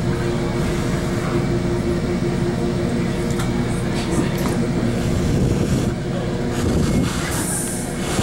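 Metrolink commuter train running along the rails, heard from inside a passenger car: a steady rumble with a constant hum through it. A brief high-pitched hiss comes near the end.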